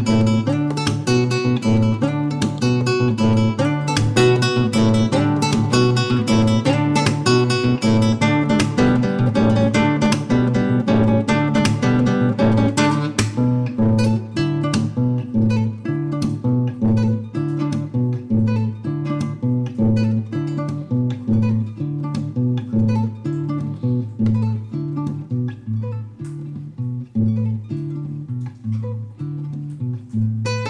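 Classical guitar played fingerstyle: a busy run of plucked notes over a repeating bass line, thinning out to sparser, quieter notes from about halfway.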